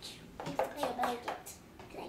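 Small plastic Play-Doh tubs being handled, making a few sharp clicks and knocks, with a child talking over them.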